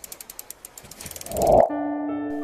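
Sound effect for an animated logo: a rapid run of ratchet-like ticks that builds into a swell of noise about a second and a half in, then gives way to held synth tones.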